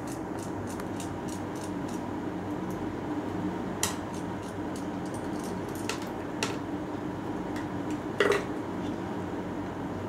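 A few small, sharp clicks and taps of a screwdriver and small parts being handled on a miniature 9-volt DC motor, spaced out over several seconds, over a steady low hum.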